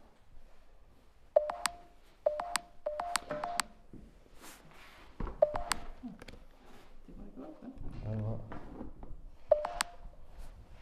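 Short electronic chirps from a small gadget, each a quick click dropping into a brief steady tone, coming in clusters: two, then five in quick succession, then two, then two more near the end.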